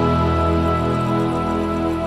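Music: the orchestra and band holding a long sustained chord with no singing, easing slightly quieter.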